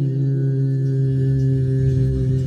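A man's voice holding one long, steady sung note at the end of a melismatic phrase of a Turkish damar song, with the bağlama accompanying.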